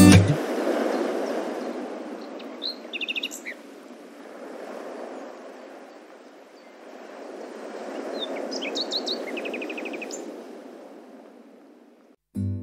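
Birds chirping in two short bouts, each a few quick repeated high notes, over a soft rushing ambient noise that swells and fades twice. A guitar song cuts off just at the start.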